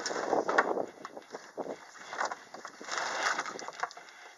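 Irregular rustling and scraping as a loose truck wiring harness in corrugated plastic loom is handled and shifted on wooden boards, loudest in the first second and again near the end, with some wind on the microphone.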